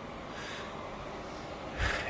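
Steady, even noise of a through-wall room air conditioner running, with a short intake of breath near the end.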